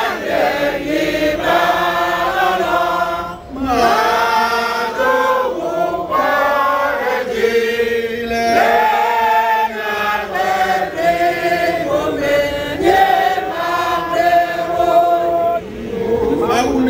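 A group of voices, men and women, chanting a song together in long held notes, phrase after phrase, with a short break about three and a half seconds in.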